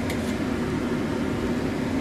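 Steady mechanical hum with a constant low drone, with a light metal clink near the start as the mesh skimmer touches the pot.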